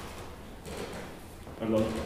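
Quiet room tone of a lecture hall, then a brief drawn-out voiced 'a' hesitation from the lecturer near the end.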